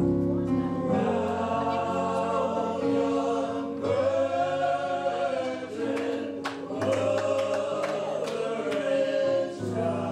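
Gospel music: men's voices singing long held, sliding lines over sustained accompanying chords.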